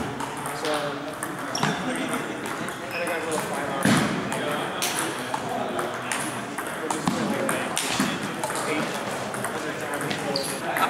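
Table tennis ball clicking off paddles and bouncing on the table in a rally, a run of sharp ticks with other tables' play mixed in. Voices chatter in the background.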